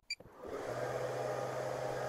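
Portable diode/fiber laser engravers starting a job: a steady quiet whir of their fans with a low hum that sets in under a second in, after a faint short beep at the very start.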